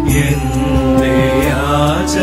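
Devotional hymn music: a voice singing a slow, drawn-out melody that slides in pitch over a steady held accompaniment.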